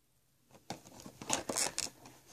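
Plastic packaging of a craft kit box being handled and turned in the hands, giving quick crinkles, scrapes and light taps that start about half a second in.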